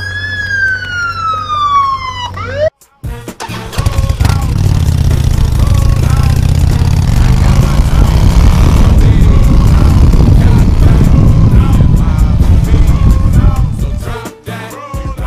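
A siren wailing, its pitch peaking just at the start and falling away, cut off abruptly under three seconds in. Then a small minibike engine runs loudly, with a rumble that rises in pitch for a few seconds around the middle.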